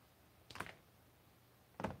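Two sharp snaps of cutters or strippers on an old test-lead wire, about a second and a quarter apart, as the faulty crimped end is cut off and the insulation is worked.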